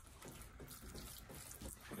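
Faint, quiet handling sounds of a spatula stirring thick pesto in a small stainless steel saucepan.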